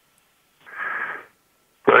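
A short breath heard over a telephone line, starting about half a second in and lasting under a second. A man's voice starts just at the end.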